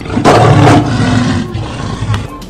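A loud roar, deep and rough, starting just after the start and fading out after about a second and a half.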